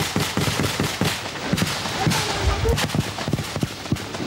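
Gunfire: many shots in quick, irregular succession, as in a burst of automatic and rifle fire.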